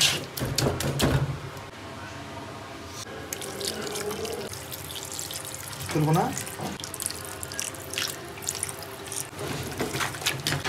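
Wet squelching as a hand kneads marinated meat in a metal pot. About six seconds in, a thin white liquid splashes as it is poured in, and the squelching starts again near the end as it is mixed through.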